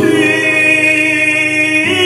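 Vietnamese ballad with long-held, choir-like vocal notes over sustained accompaniment; the harmony shifts to a new chord near the end.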